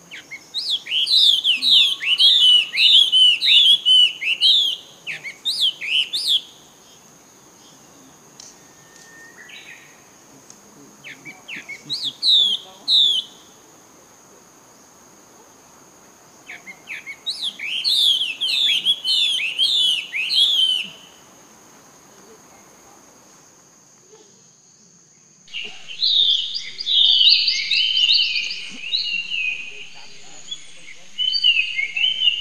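Birds calling: three runs of rapid, sharp, falling whistled chirps over a steady high-pitched insect drone. About 25 seconds in, the sound changes abruptly to a denser, jumbled chorus of bird calls.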